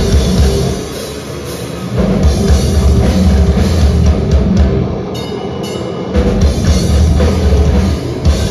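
Metal band playing live through a club PA: heavy distorted guitars, bass and drums come in together at the start of a song, with two short quieter breaks in the playing.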